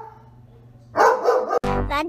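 A dog gives a single loud bark about a second in, over a low steady hum. Near the end it is cut off by a pop song with singing.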